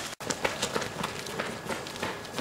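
Two people's running footsteps on a concrete floor: a quick, irregular patter of shoe strikes. The sound cuts out for an instant just after the start.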